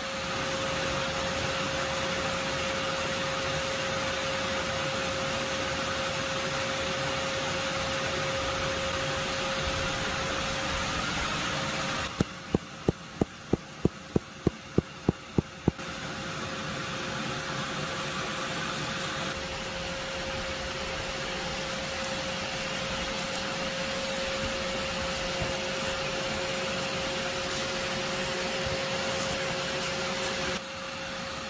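Vacuum running steadily with a constant motor whine, its hose set into the entrance of an underground yellow jacket nest to suck up the wasps. About twelve seconds in, the vacuum sound drops for about four seconds, during which a quick run of about a dozen sharp clicks comes, roughly three a second.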